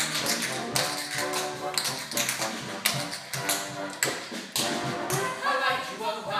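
Tap shoes striking a stage floor in quick, dense rhythms over band accompaniment.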